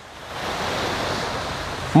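Ocean surf: the wash of a wave swells up shortly after the start and holds for over a second, easing a little near the end.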